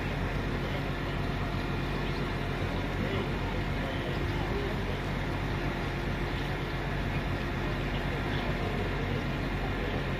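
Diesel multiple unit's engine running with a steady low drone as the train rolls slowly toward the platform.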